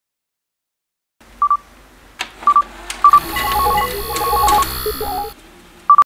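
Electronic beeps of an end-credit sound logo: starting about a second in, single short beeps and a click, then a quick run of beeps at two pitches over a high steady whine, and one more beep at the very end.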